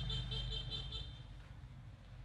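Steady low hum in the room, with a quick run of about five short, high-pitched chirps during the first second.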